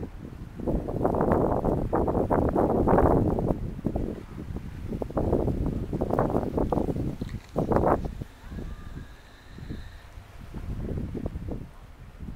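Wind buffeting the microphone in uneven gusts, loudest through the first four seconds and again about eight seconds in.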